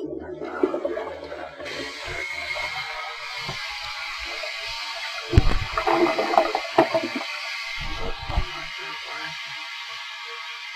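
A steady rushing noise, like water running, starts about two seconds in, with a few heavy low thumps around the middle.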